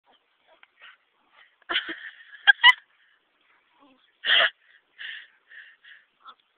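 A French bulldog's breathy snorts in short, irregular bursts as it hangs on by its jaws to a toy being swung around, with two sharp clicks in the middle.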